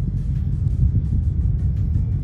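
Soundcheck music playing over an outdoor stage PA, heard from a distance in the stands: mostly a heavy, steady low bass rumble with little clear detail above it.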